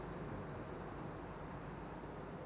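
Steady, faint background noise with a low hum underneath and no distinct events.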